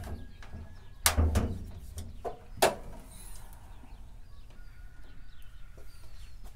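Ford F-350 hood being popped open: a sharp metal clunk from the latch about a second in, then a second sharp clunk about a second and a half later as the hood goes up.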